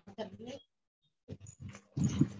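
Faint, broken voices over a video-call link, in two short spells of choppy sound with a near-silent pause in the middle.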